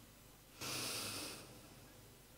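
A reciter's breath drawn in close to the microphone: one hissing inhale of under a second, about half a second in, taken before the next recited phrase.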